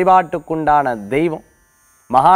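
A man speaking Tamil, breaking off about one and a half seconds in for a short pause.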